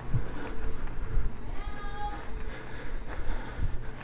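Rumbling handling noise from a handheld camera and a few soft footsteps as the person filming walks along a corridor.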